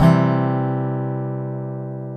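Resonator guitar: one chord struck and left to ring, fading slowly as the high overtones die away first.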